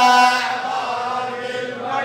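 A man chanting an Arabic mourning lament (rithā') into a microphone, holding a long sung note that softens after about half a second.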